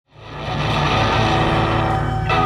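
Live rock band playing a sustained, dense chord on electric guitars with bass underneath, fading in from silence over the first half second.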